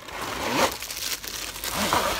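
Plastic wrapping crinkling and cardboard scraping as a tripod is slid out of a long cardboard box, an uneven rustle.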